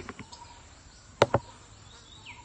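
A plastic spoon knocked twice in quick succession against the rim of a plastic bowl about a second in, shaking canned tuna off the spoon.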